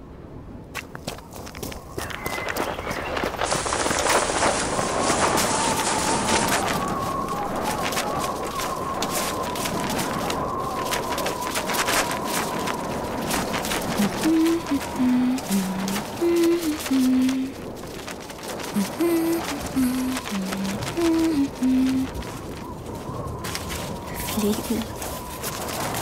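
Sound-effect ambience of a rushing wind-like noise that swells in the first few seconds, under a steady high hum. From about 14 seconds in, a slow melody of held low notes steps up and down over it.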